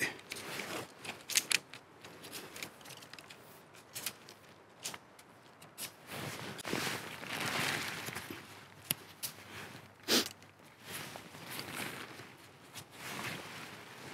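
Pitching a 3F UL Gear tent: its nylon fabric rustling and its poles and clips clicking as it is handled. There is a longer rustle about halfway through and a sharper click a few seconds later.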